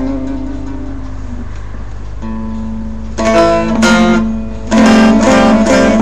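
Bağlama (saz), the long-necked Turkish lute, played solo: a note rings and fades over the first second and a half, then after a lull quick plucked runs resume about three seconds in over a steady low note, louder near the end.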